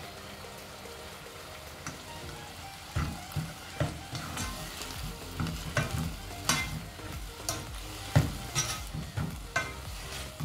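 A black plastic spoon stirring and scraping a damp scraped-coconut mixture in a nonstick saucepan over a gas flame, with a faint sizzle. The stirring, a run of irregular scrapes and knocks, starts about three seconds in.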